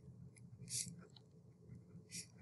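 Faint scratching and ticking of a pen writing on paper.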